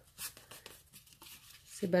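Faint rustling and light taps of a pleated strip of kraft cardstock being handled, with a few soft clicks about a quarter second in; a woman's voice starts again near the end.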